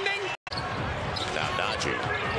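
A steady tone cuts off abruptly less than half a second in, followed by a moment of silence. Then comes arena crowd noise with a basketball being dribbled on the hardwood court.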